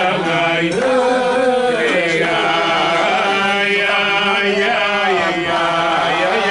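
A group of men singing a slow niggun together, with long held notes that glide from one pitch to the next.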